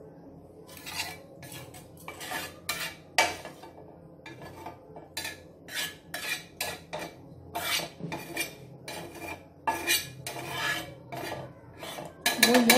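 Spatula scraping and spreading melted butter around a flat frying pan in short irregular strokes, one or two a second, over a low steady hum.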